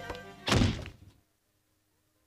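A cartoon sound effect of a wooden door slammed shut: one heavy thunk about half a second in that dies away within about half a second.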